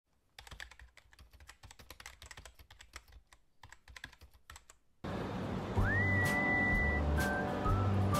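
Keyboard typing sound effect: a run of quick, irregular, quiet key clicks. About five seconds in, louder background music cuts in with heavy low beats and a high note that slides up and holds for about a second.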